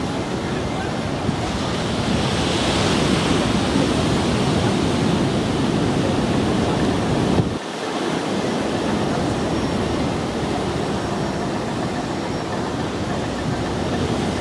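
Steady rush of wind buffeting the microphone with sea surf behind it, a low rumbling noise that swells a few seconds in and drops away suddenly about halfway through before settling back.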